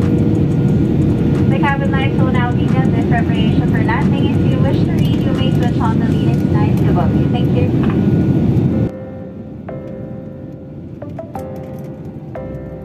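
Loud, steady rumble of airliner cabin noise in flight, with a voice talking over it for most of its length. About nine seconds in the rumble cuts off, leaving only background music.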